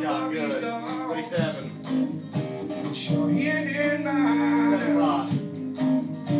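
A live rock band playing: guitars, bass and drums, with a male voice singing two drawn-out phrases, one at the start and one in the second half.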